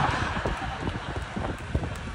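An audience reacting to a joke, its noise fading, with scattered irregular hand claps.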